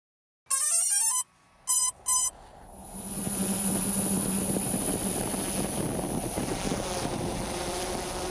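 Intro sound design: a quick rising run of bright electronic chime tones, two short blips, then a noisy swell with a steady low hum and a thin high whine that builds and holds.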